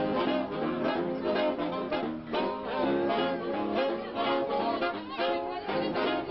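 A saxophone ensemble playing a tune together live, several saxophones sounding at once with notes changing throughout.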